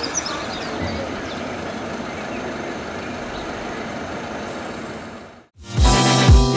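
Steady outdoor background noise of a vehicle engine running, with a few bird chirps at the start. Near the end it cuts out suddenly and loud electronic music with a heavy beat begins.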